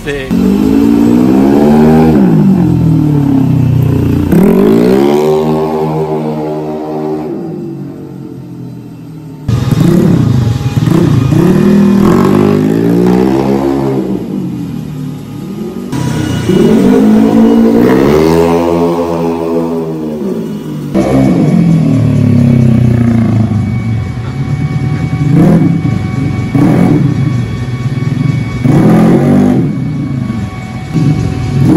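Bored-up Honda Vario 125 scooter's single-cylinder four-stroke engine revving hard over and over as it is ridden around, its pitch climbing and falling with each throttle opening. The sound jumps abruptly a few times.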